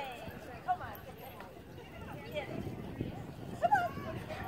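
Dogs barking and yipping in short, repeated calls, loudest just under a second in and again near the end, with people's voices in the background.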